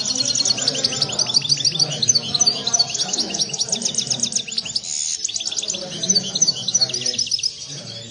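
Caged European goldfinches singing: a fast, unbroken twittering run of short high chirps that stops shortly before the end.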